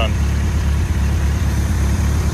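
The Weber 38/38-carbureted engine of a 1985 Nissan 720 pickup running steadily with a deep, even rumble. It runs again now that its loose fuel pump relay wiring has been reconnected.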